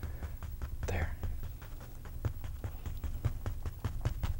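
Bristle paint brush tapped repeatedly against a wet oil-painted canvas to lay in grass, a run of quick light taps about five a second, with a soft breath about a second in.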